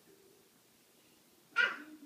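Quiet room, then one short, loud, breathy vocal sound near the end.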